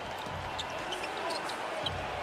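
A basketball being dribbled on a hardwood court: a few separate bounces ringing in a large, nearly empty arena.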